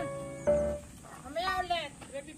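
A sheep bleating once, a quavering call about a second and a half in, over background music with a short held note.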